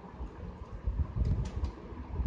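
Computer keyboard typing: a few short key clicks about a second in, over low, dull thumps.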